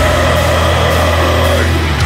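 Heavy metal band playing: distorted guitars and bass hold a low, sustained chord over drums.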